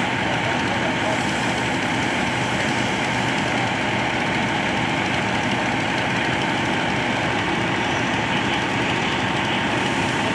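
Engine noise, running steadily without change, with voices mixed in.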